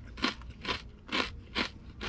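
A person chewing a mouthful of crunchy toasted bread close to the microphone: four crisp crunches, about two a second.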